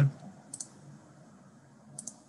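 Two short, sharp clicks, one about half a second in and one at the end, over a faint low room hum on an open microphone.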